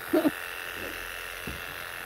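Wahl KM2 electric animal clippers with a surgical blade running with a steady hum while clipping a long-haired Persian cat's coat. A brief burst of voice comes right at the start.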